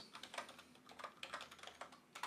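Faint computer keyboard keystrokes: a quick, uneven run of key taps as a cell range and closing parenthesis are typed into a spreadsheet formula.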